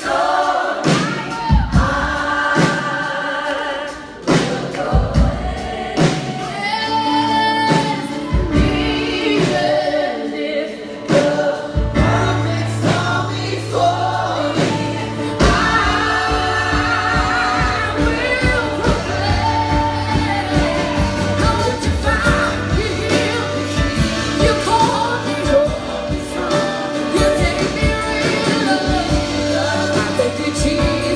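Live worship band playing, with drums and a bass line under many voices singing the melody. The bass comes in about twelve seconds in and holds steady from there.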